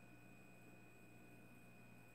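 Near silence: room tone with a faint steady hum and a few thin high tones.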